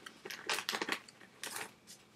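A quick series of light clicks and clinks from small hard objects being handled, in two clusters: one about half a second to a second in, another around a second and a half in.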